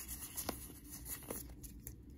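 Pokémon trading cards being flipped through by hand: faint sliding of card against card with a few light clicks.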